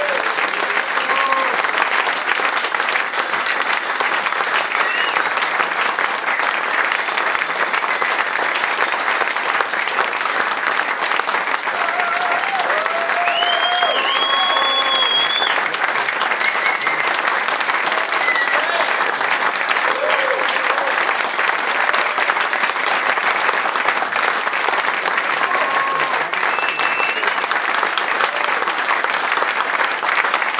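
Audience applauding steadily, with a few voices calling out near the middle.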